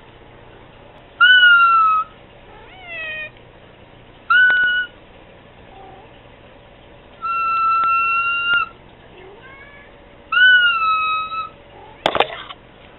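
Cat meowing repeatedly in high, thin calls, about six of them: short rising-and-falling meows and falling glides, with one long, even meow held for over a second in the middle.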